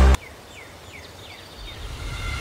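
Electronic dance music cuts off abruptly at the start, leaving quiet outdoor ambience in which a bird gives a run of short, quick falling chirps. A low rumble rises near the end.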